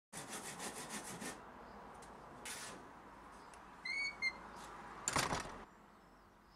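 Handsaw cutting wood in quick strokes, about six a second, for just over a second, followed by scattered scraping of wood, a brief high chirp about four seconds in, and a louder scrape a second later.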